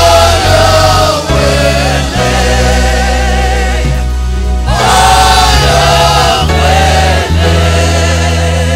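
Live gospel worship: a praise team of several singers with microphones sings together over a sustained low accompaniment. The voices come in two phrases, one at the start and another about five seconds in, while the low notes change pitch every second or so between them.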